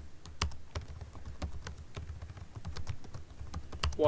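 Typing on a computer keyboard: a run of irregularly spaced keystrokes as a word or two is typed out.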